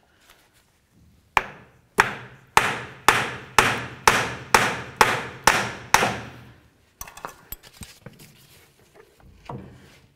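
About ten hammer blows, roughly two a second, each ringing briefly, knocking a CV axle's inner end to break its locking clip free of the front differential. A few lighter clicks and rattles follow as the shaft comes loose.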